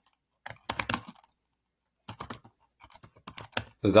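Typing on a computer keyboard: a short run of keystrokes about half a second in, then a longer run from about two seconds in.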